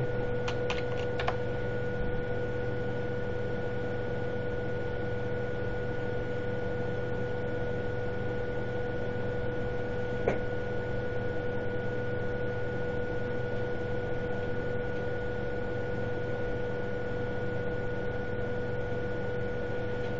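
Steady electrical hum and hiss with two constant high whining tones, broken only by a couple of faint clicks, one about a second in and one about ten seconds in.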